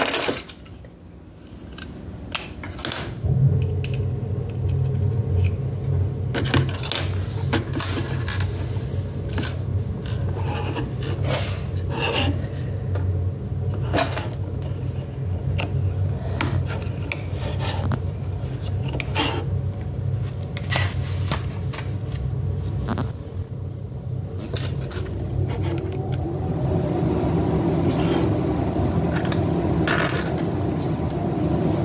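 Plastic LEGO pieces clicking and rattling as they are handled and pressed together, in scattered sharp clicks throughout. A steady low hum starts about three seconds in and carries on under the clicks, growing fuller near the end.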